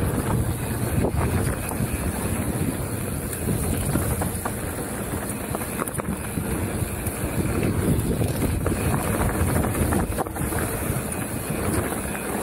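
Mountain bike descending a dirt trail at speed: steady wind buffeting the action camera's microphone over the low rumble of tyres on dirt, with occasional clicks and rattles from the bike.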